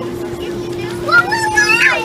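Children playing in a hot tub: high-pitched shouts and squeals, loudest in the second half, over a steady hum.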